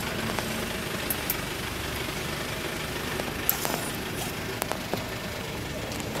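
A steady low mechanical hum with a few faint clicks scattered through it.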